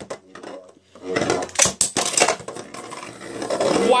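Metal-wheeled Beyblade spinning tops whirring and clashing in a plastic stadium, with a quick run of sharp clacks about a second in as one top is knocked out of the bowl.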